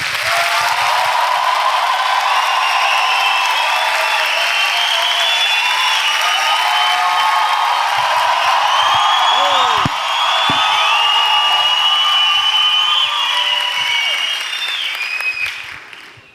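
Live comedy audience applauding, with cheers and whoops over the clapping; the applause dies away near the end.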